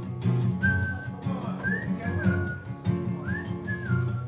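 A person whistling a short melody, a clear high tune sliding between notes in a few brief phrases, over a strummed acoustic guitar.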